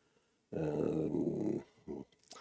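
A man's drawn-out hesitation sound "yyy" (the Polish "um"), held at one steady low pitch for about a second, starting about half a second in.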